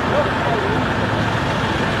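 Steady road traffic and vehicle engine noise, with people talking in the background.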